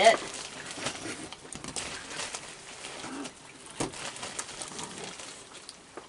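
A crowd of raccoons feeding close by: scattered small clicks, crunches and rustles of chewing and of food landing on the deck boards, with soft coo-like churring calls among them.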